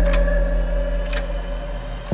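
Cinematic trailer sound design: a deep, sustained bass drone with faint steady higher tones, fading slightly. Two sharp clicks about a second apart.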